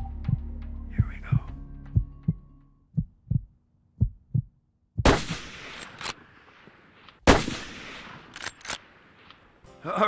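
A heartbeat sound effect, paired low thumps about once a second, over a low hum that fades out. Then two shots from a Winchester Model 1886 lever-action .45-70 rifle a little over two seconds apart, each echoing, the second the loudest, with a pair of sharp metallic clicks after each as the lever is cycled.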